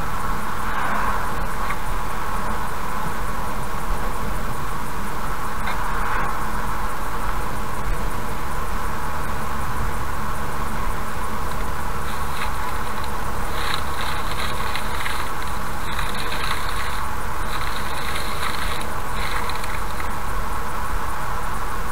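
Steady road noise of a car cruising at highway speed, heard from inside the cabin: engine and tyre rumble. A brief swell about a second in comes from an oncoming lorry passing. From about twelve seconds in, a rougher hiss comes and goes over the rumble.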